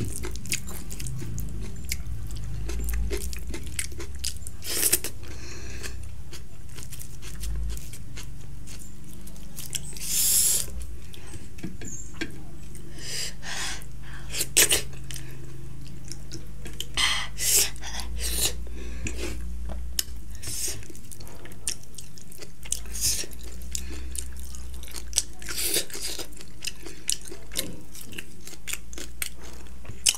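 A person chewing food close to the microphone, with sharp crunches scattered irregularly through. A steady low hum runs underneath.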